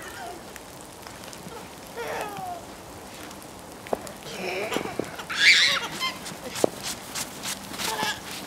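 A young child's high-pitched squeal, the loudest sound, a little past halfway, with shorter vocal sounds before it and a few sharp clicks scattered around it.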